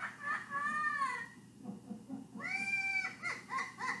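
A parrot laughing, played back through a TV speaker: about halfway through one long high call, then a quick run of short arched "ha" calls.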